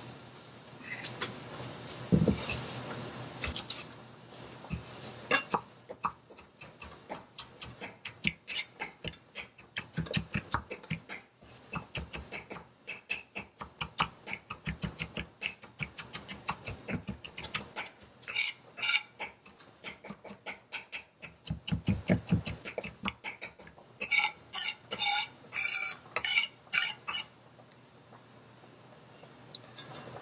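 Kitchen knife chopping fresh parsley on a thick wooden chopping block: quick runs of knife strikes on the wood, a few a second, broken by short pauses.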